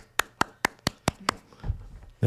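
One person clapping at the end of a song: about seven sharp, evenly spaced claps in just over a second, starting suddenly.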